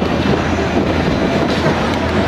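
Dense outdoor street noise from a large crowd with many motorcycle and scooter engines running at low speed, a steady low hum beneath it.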